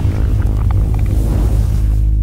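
Logo intro stinger: a deep, sustained bass rumble with held low tones under a swelling hiss that cuts off near the end.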